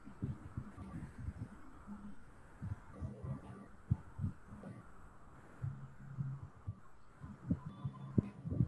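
Faint, irregular low thumps over a low steady hum, with no speech.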